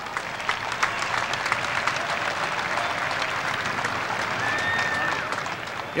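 Stadium crowd applauding, a dense patter of many hands clapping that swells at the start and thins out near the end.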